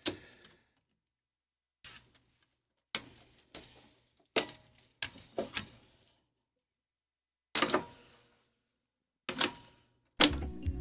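Reel-to-reel tape deck being threaded and handled: about eight separate clicks and knocks as the tape is led through the head block and the reels are seated and turned by hand, ending with a sharper click from the deck's transport keys near the end.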